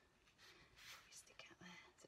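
Near silence, with a faint soft hiss about a second in.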